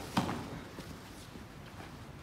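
One sharp knock just after the start, then faint shuffling and scuffing of fighters' shoes on a wooden gym floor during foam-weapon sparring.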